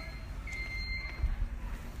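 Low rumbling handling noise from a handheld camera carried at walking pace, with a thin, steady high-pitched tone that grows louder for about half a second starting about half a second in.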